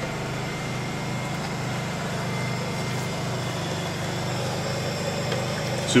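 An engine running steadily: a low, even hum with a faint regular pulse.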